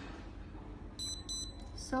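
Fingerprint padlock giving a short electronic beep about a second in, lasting about half a second: the lock has read the finger and accepted it, and it opens.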